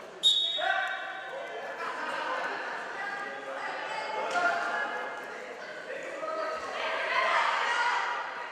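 Several people shouting and calling out in a large, echoing sports hall during a wrestling bout, their voices overlapping. A sudden sharp sound just after the start is the loudest moment.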